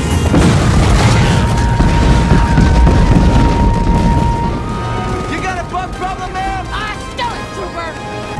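Film soundtrack of a battlefield bombardment: explosions rumbling under music with a held note for the first few seconds, then a voice over a radio calling that they are under heavy attack.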